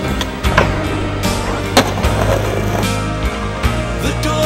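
Skateboard wheels rolling on concrete with sharp clacks of the board, one about half a second in and a louder one just under two seconds in, the pop and landing of a trick down a stair set. Music plays underneath.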